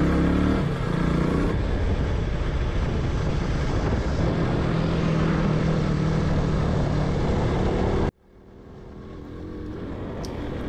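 KTM RC200's single-cylinder engine running while the bike is ridden, under heavy wind rush on the microphone. The sound cuts off suddenly about eight seconds in, and a quieter road and wind noise then builds back up.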